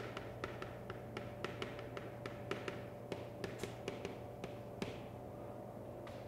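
Chalk tapping and scratching on a blackboard while characters are written: a quick, irregular series of short sharp clicks, several a second. A faint steady hum lies underneath.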